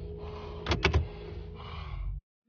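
Car cabin with the engine idling, a steady low rumble. A quick run of sharp clicks and knocks comes about three-quarters of a second in as the driver handles the controls to set off in reverse.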